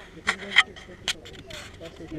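A few sharp scuffs and clicks from walking on rock and rubbing at the hat-mounted action camera, with faint voices behind.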